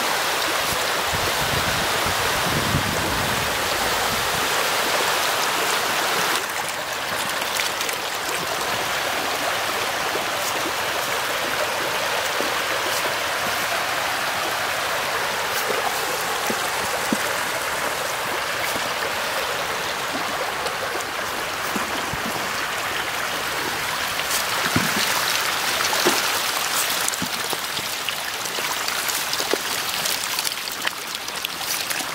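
A dense mass of fish churning and splashing at the surface of a crowded pond while competing for food: a steady hiss of countless small splashes with scattered sharper plops.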